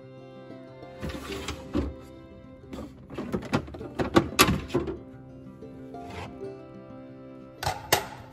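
Background music with held, steady tones, over a series of sharp knocks and clatters from clear plastic storage bins being handled and set into a refrigerator drawer. The knocks are busiest and loudest about four seconds in, with one more knock shortly before the end.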